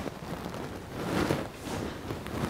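Steady hiss of room noise on a speaker's microphone during a pause in speech.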